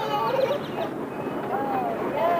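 A young child's high-pitched voice making short squeals and babbling sounds that rise and fall in pitch, with a longer drawn-out sound near the end.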